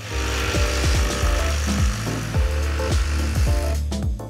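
Cordless jigsaw cutting through a thick, heavy plastic wall track, the blade sawing steadily and stopping near the end.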